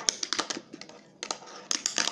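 A fingerboard clacking and tapping on a wooden table and ledge: an irregular run of sharp clicks as the board's deck and wheels hit the surface during trick attempts.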